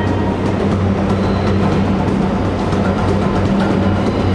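Steady loud rumble of a subway train over a continuous low hum, with faint notes from a busker's instrument now and then underneath.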